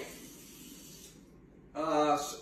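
Quiet room hiss with nothing distinct in it, then a person's voice starts speaking near the end.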